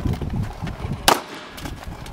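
A single sharp gunshot about a second in, over low rustling noise.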